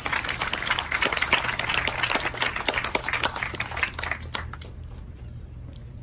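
Audience applauding, dying away about four and a half seconds in.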